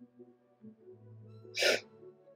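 Faint music with sustained tones, and about one and a half seconds in a single short, sharp burst of breath through the nose.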